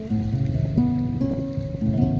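Instrumental music led by acoustic guitar, playing a slow sequence of held notes.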